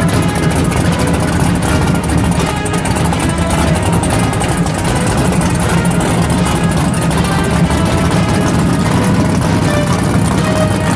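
Drag car's engine idling with a steady low rumble as the car creeps forward, under background music.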